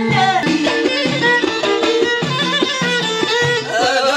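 Amazigh ahidous folk music played live: bendir frame drums and hand-clapping keep a steady beat under a melody line.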